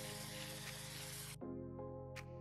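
Tap water running onto black-eyed beans in a stainless steel colander, a steady hiss that cuts off suddenly about one and a half seconds in. Background music with held notes plays throughout.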